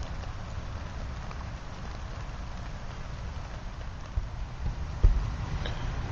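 Steady patter of light rain, an even hiss with a low rumble beneath it. A couple of brief dull thumps come near the end, the louder one about five seconds in.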